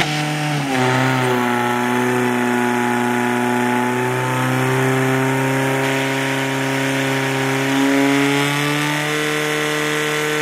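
Portable fire pump's petrol engine running at high revs under load, pushing water through the attack hoses. It settles after a short dip in pitch about half a second in, then holds a steady, strained note with a slight rise near the end.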